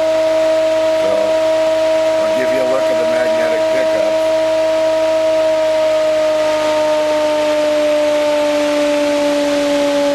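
Bedini-Cole window motor, an ironless motor with coils switched by magnetic pickups, running with a steady high-pitched whine. The pitch sinks slightly over the second half as the rotor slows a little.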